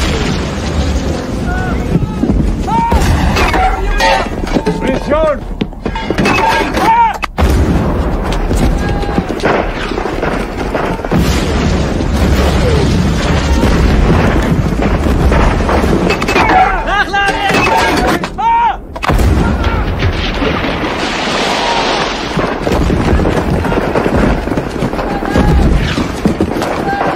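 War film battle soundtrack: explosions and gunfire over a continuous low rumble, with shouting voices in two stretches and a music score underneath.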